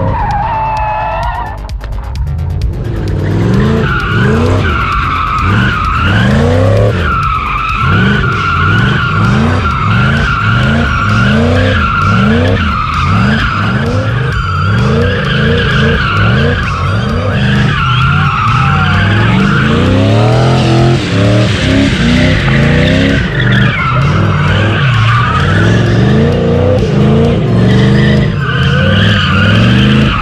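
Chevrolet LS2 V8 in a DeLorean DMC-12 drift car, revved up again and again, about once a second, while the rear tyres squeal in a long, wavering screech as the car slides.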